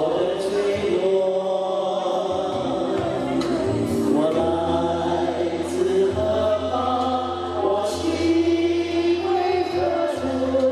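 A group of voices singing together into microphones, with amplified backing music and a low, sustained bass line under the sung notes.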